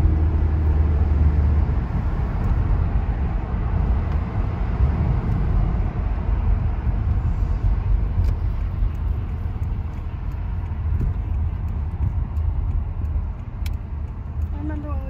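Car driving, heard from inside the cabin: a steady low rumble of engine and tyre road noise.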